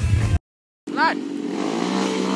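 Music and voices cut off suddenly, followed by half a second of silence. Then a dirt bike's engine runs under load in thick mud, its pitch rising slightly and easing, with a brief voice near the start.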